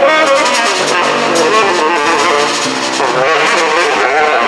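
Live jazz quartet playing: a tenor saxophone runs a winding melody line over a plucked upright double bass, with the drummer keeping time on cymbals and drums.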